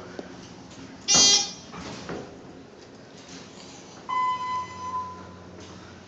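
ThyssenKrupp traction elevator signal tones: a short, loud, high ding about a second in, then a single electronic tone about four seconds in that holds for about a second and fades. Both play over a low, steady hum.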